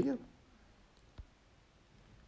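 The end of a spoken word, then near silence broken by one faint, sharp tap about a second in: a finger tapping a tablet's touchscreen while editing text.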